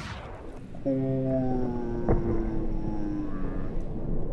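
A basketball thuds once on a gym floor about two seconds in. It sits under a long held note that sinks slowly in pitch from about a second in until shortly before the end.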